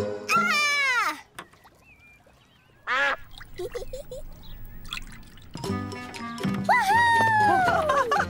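Cartoon soundtrack: music with sliding, whistle-like tones that fall in pitch, one early on and two more near the end, and a short gliding sound about three seconds in.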